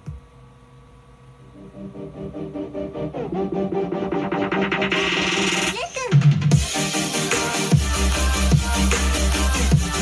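Electronic dance music playing through small Bose computer speakers from the Pioneer CT-F500 cassette deck's pass-through output while the deck records. It starts quiet and builds with a rising sweep, then the full beat comes in about six and a half seconds in, with heavy bass from about eight seconds.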